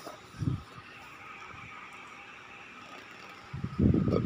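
Steady background hum with a few low bumps of phone handling noise on the microphone, the loudest near the end.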